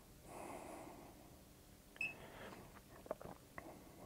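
Quiet room tone with a soft breath through the nose about half a second in, then a few faint clicks in the second half.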